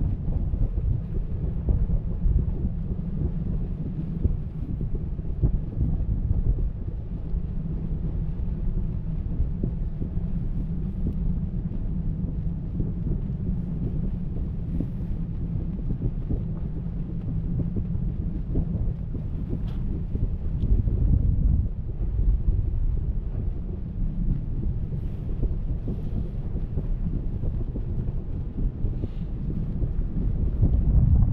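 Steady wind buffeting an open camera microphone during parasailing, heard as a continuous low rumble.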